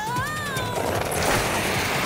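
Cartoon soundtrack: action music with a character's long gliding "oh" in the first second, then a dense rushing, hissing sound effect from about a second in.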